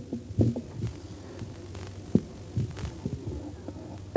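A podium microphone being handled, giving a few soft, irregular thumps over a steady low hum from the PA.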